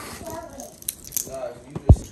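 Faint voices with a few light clicks and rattles, then one loud, short, low thump just before the end.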